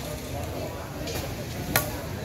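A large knife chopping through tuna flesh into a thick wooden chopping block: a fainter stroke about a second in and a sharp knock near the end.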